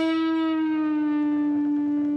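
A single sustained electric guitar note ringing out, its pitch sinking slowly as a string bend is released back down to the fretted note.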